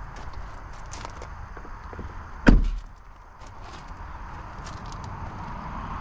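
The aluminum door of a Ford F-350 pickup shutting with one loud thump about two and a half seconds in. Footsteps crunch on gravel around it.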